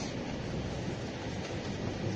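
Steady low rumble and hiss of background noise with no speech.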